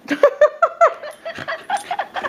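Pembroke Welsh Corgi whining and yipping in a quick run of short, high calls that bend in pitch, about five in the first second, then softer ones after.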